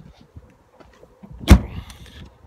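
Tailgate of a Volkswagen Golf SV shut with one loud slam about a second and a half in, after a few faint knocks and rustles.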